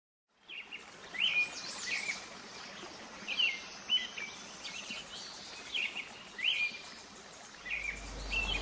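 Birds chirping: short, high calls, each rising and dropping quickly, repeated every second or so over a faint steady hiss.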